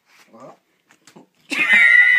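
A loud, high-pitched, drawn-out vocal squeal starts suddenly about one and a half seconds in, wavering and sliding slightly down in pitch. A few faint small sounds come before it.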